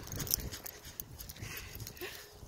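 Irregular crunching footsteps in fresh snow.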